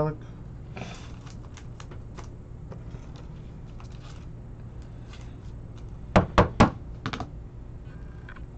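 A trading card being handled and slipped into a clear plastic holder: faint light clicks and rustles, then three sharp plastic clicks in quick succession about six seconds in. A steady low hum runs underneath.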